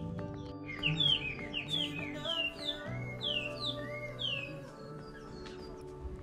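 A songbird singing a quick series of short, downslurred whistled notes, over soft background music made of steady held tones. The bird's notes come in a run from about a second in, fading out past the middle.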